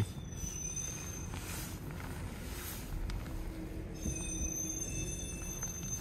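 Renault Austral's 4Control rear-wheel-steering system making a high-pitched squeal as the car reverses, faint at first, then several shrill tones together from about four seconds in. It is unpleasant to hear, which the owner puts down to dust stuck in the system.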